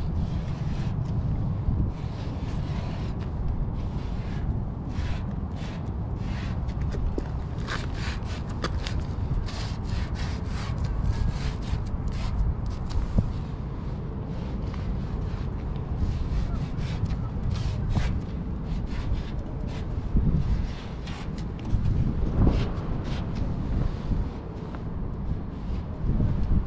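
Wind buffeting the microphone in a steady low rumble, with the scratchy rubbing and tapping of a wide paint-marker tip drawn across rusty sheet steel, densest about a third of the way in.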